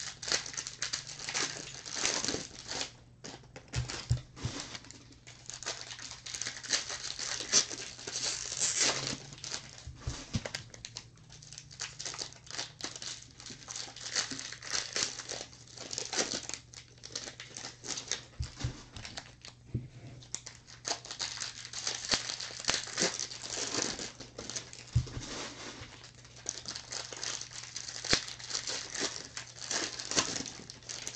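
Plastic foil wrapper of a 2018 Bowman baseball jumbo pack crinkling and tearing as it is opened, with the cards being handled and flipped through; an irregular crackling that goes on and off throughout.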